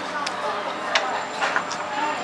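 Restaurant background chatter from other diners, a steady murmur of voices, with a couple of short sharp clicks about a second in and again around a second and a half.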